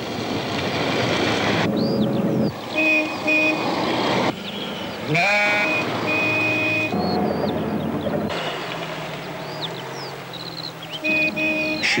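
A small car's engine and tyres running on a country lane, with short, sharp honks of its horn, twice about 3 s in, once longer at about 6 s and twice near the end, and sheep bleating.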